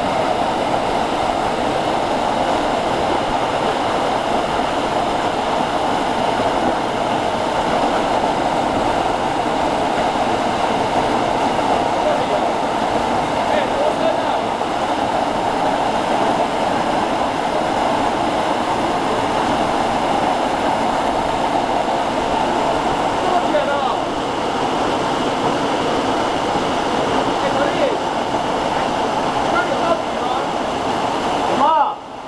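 Waterfall pouring into a rock plunge pool: a steady, unbroken rush of falling water.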